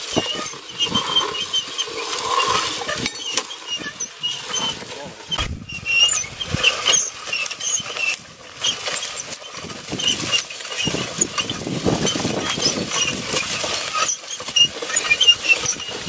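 A metal wheeled plate seeder rattling and clicking irregularly as it is pushed over rough, stony tilled soil, its chain drive and seed plate turning, with footsteps on the dirt.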